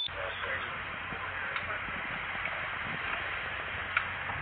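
Steady background hiss with indistinct, distant voices and a couple of faint clicks.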